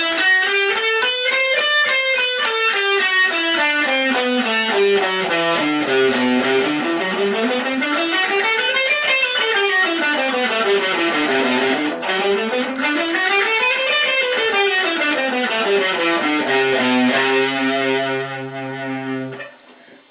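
Clean electric guitar playing the C Lydian mode (the major scale with a raised fourth) as a run of single picked notes, climbing and falling through about two octaves several times. It ends on a held low note that rings out and fades near the end.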